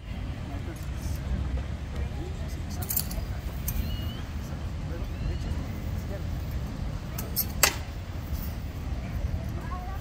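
Mock combat with wooden practice weapons: a steady low rumble of open-air background with faint clinks, and one sharp knock about seven and a half seconds in as a weapon strikes.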